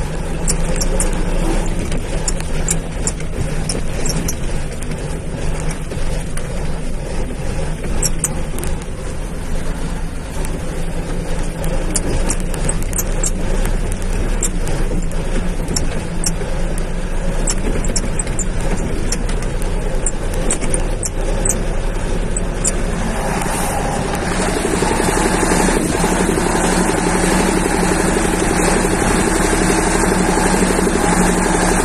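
Vehicle engine running as it drives slowly over a rough, rocky dirt track, with many sharp clicks and rattles from the jolting ride. About 23 seconds in, a louder, steady rushing noise comes in over the engine.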